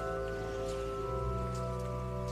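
Church pipe organ holding sustained chords, moving to a new chord with a different bass note about a second in. Soft rustling is heard over it.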